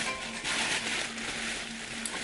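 Plastic packaging crinkling and rustling as a wrapped backpack is handled and lifted.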